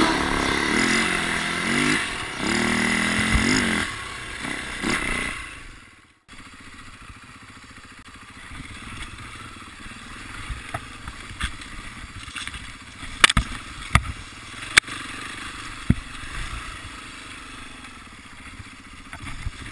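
Backing music with singing fades out over the first few seconds. Then an enduro dirt bike's engine is heard running, muffled through an onboard action camera, as it rides a rocky forest trail. Several sharp knocks and clatter come near the end.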